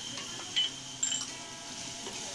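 Tomato masala frying gently in a clay pot as it is stirred, with a couple of light clinks of the spoon against the pot about half a second and a second in.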